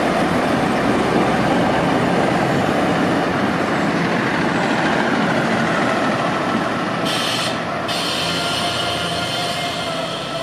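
Korail diesel passenger train moving through the station and pulling away, a steady rumble of engine and wheels on the rails that slowly fades. A high, steady tone joins about seven seconds in.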